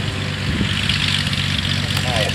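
Cessna 182's piston engine and propeller running steadily at low power as the plane rolls out on the grass strip after landing.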